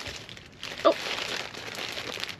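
Plastic poly mailer bag crinkling and rustling as it is pulled open by hand, with a short "oh" about a second in.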